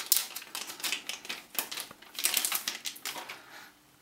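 Metallic anti-static bag crinkling and crackling in irregular spurts as it is handled and opened to take out a solid state drive.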